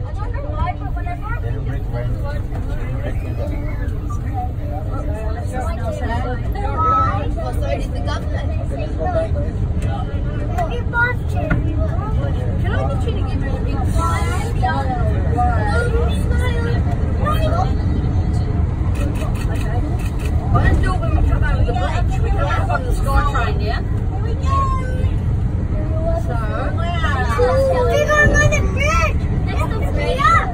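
Sydney Metro train running at speed, heard from inside the front carriage as a steady low rumble, with passengers chatting over it.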